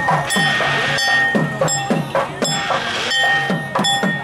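Street procession band music: drum beats and sharp metallic strikes in a quick, uneven rhythm, about two or three a second, under one high note held by a wind instrument.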